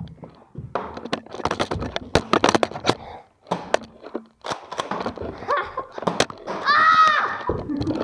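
Rapid clattering clicks and knocks of a Nerf-battle scuffle with the camera jostled, then a long high-pitched yell near the end.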